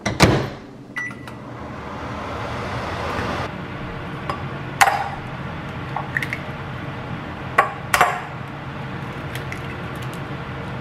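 A microwave oven door shuts with a thump and a single keypad beep sounds, followed by a steady hum. Later come sharp taps of eggs being cracked against the rim of a ceramic bowl, three of them, about five seconds and about eight seconds in.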